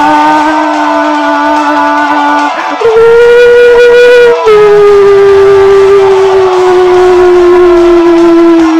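A man singing long wordless held notes: one steady note, a brief break about two and a half seconds in, a higher note held for about a second and a half, then a long note gliding slowly down.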